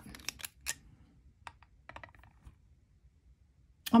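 Light clicks and taps of a clear acrylic pen cap being handled and set down on the steel platform of a digital pocket scale. There are several sharp clicks in the first second, then a few fainter ones.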